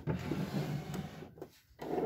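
Singer domestic electric sewing machine running and stitching for about a second and a half, then stopping. A second, shorter burst of sound follows near the end.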